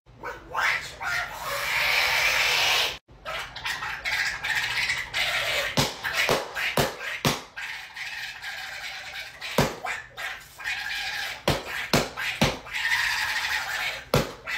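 A raspy, garbled Donald Duck–style voice squawking, broken by an irregular string of sharp smacks.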